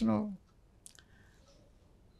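The last syllable of a man's spoken word, then a pause in near silence broken by one short, faint click a little under a second in.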